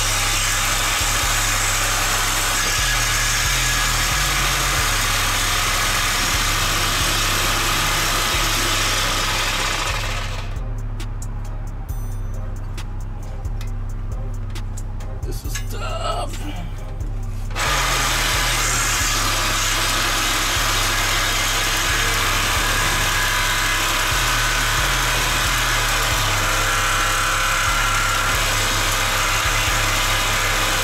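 An electric saw cutting through a steel exhaust pipe under a car. It runs for about ten seconds, stops for several seconds, then cuts again, over bass-heavy background music.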